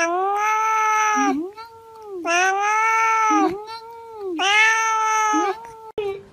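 Domestic cat meowing loudly in three long, drawn-out calls of about a second each, with shorter, softer calls between them.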